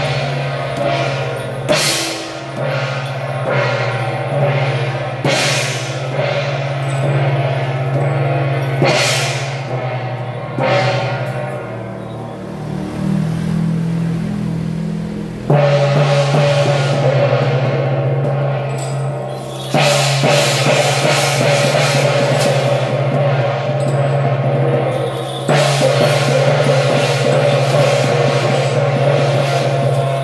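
Procession percussion: a hand gong struck about every second and a half, each stroke ringing on, over a steady low droning note. About halfway through the playing becomes dense and continuous and louder, with drums and cymbals.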